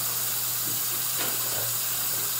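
Steady hiss of a bathroom sink tap running, with a faint low hum underneath.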